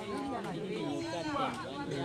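Several people talking at once, in overlapping chatter.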